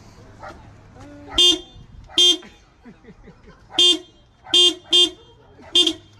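Car horn sounded in six short toots at uneven intervals, pressed by a pug at the steering wheel.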